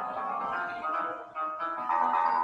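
Electronic piano-like notes from a webcam-controlled virtual piano, several held tones at different pitches overlapping. Near the end the sound dips briefly and new notes come in.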